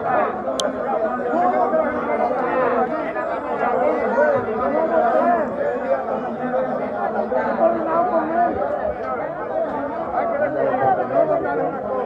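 Crowd chatter: many people talking at once in a large chamber, a steady hubbub of overlapping voices with no single voice standing out.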